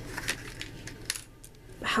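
Light clicks and taps of small hard plastic pieces being handled: a doll's plastic shoe and a snap-on roller-skate attachment being fitted together.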